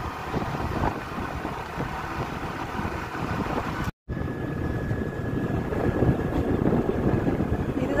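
Steady rumble of a moving vehicle's road and wind noise, buffeting the microphone. The sound cuts out for an instant about halfway, and after that a faint steady high whine sits over the rumble.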